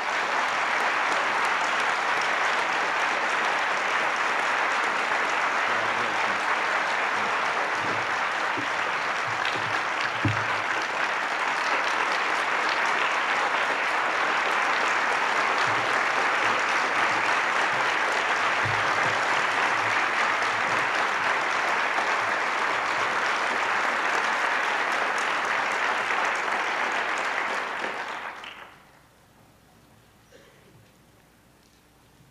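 Audience applauding: steady, sustained clapping that dies away near the end, with a couple of faint low thumps partway through.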